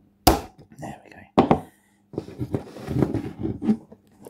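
Two sharp clicks about a second apart as the plastic odometer number-wheel assembly of a Jaeger mechanical speedometer is snapped back into its frame, followed by handling noise.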